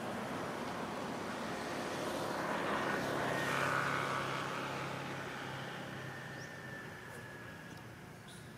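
Engine noise of a passing vehicle, building to a peak about four seconds in and then fading away.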